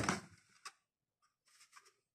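Faint handling noises from unpacking a cardboard box: packaging rustling that fades out at the start, a single sharp click a little over half a second in, and soft rustles near the end.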